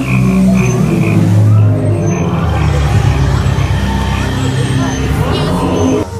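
A recorded night-forest soundscape played over loudspeakers: loud, low frog croaking, with a high chirp repeating a few times a second in the first half.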